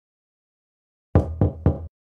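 Three short knocks, about a quarter second apart, coming after a second of silence: a knocking sound effect in a recorded children's story audio track.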